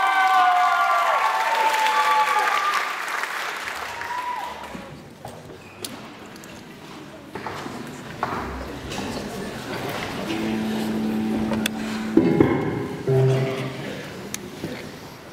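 Audience applause and cheering in a large hall, dying away after about four seconds. Then, after a few scattered knocks, a rock band's electric guitar, bass and drums sound a few held notes and a drum hit as the band gets ready to start, from about ten seconds in.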